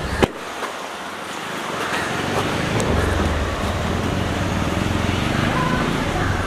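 A single sharp knock just after the start, then a low vehicle engine rumble that builds over the next two seconds or so and holds steady, with street traffic around it.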